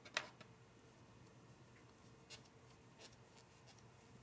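Near silence with a few faint clicks and rustles of hands handling a cotton crochet piece and a metal crochet hook; the clearest click comes just after the start.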